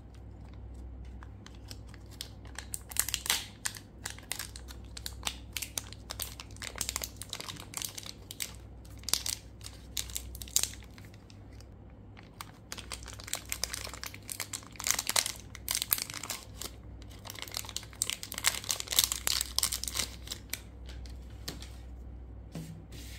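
Plastic wrapper of a pack of mini watercolour marker pens crinkling as it is handled and opened by hand. The crackling comes in several bursts with short pauses between.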